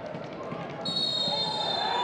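Referee's whistle: one long shrill blast starting a little under a second in and lasting about a second, over TV commentary and stadium noise. With stoppage time run out, it is the full-time whistle.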